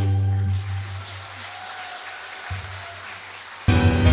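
Live piano and string quartet: a held chord dies away in the first half-second, followed by a brief hushed pause with only faint hall noise, then the ensemble comes back in loudly just before the end.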